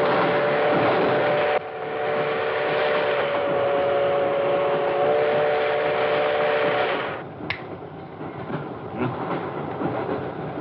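Moving passenger train running and clattering along the track, with a steady chord of several held tones over the noise. About seven seconds in it cuts off abruptly to a much quieter background with a few clicks.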